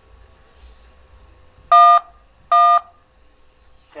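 Two DTMF touch-tones for the digit 1 from a Skype dial pad, about three-quarters of a second apart, keying in 'eleven' at an automated phone line's prompt. Each tone lasts about a quarter of a second.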